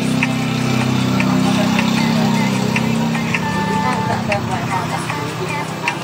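A small motorcycle engine running steadily, heard close to its exhaust, fading after about four seconds, under a music track.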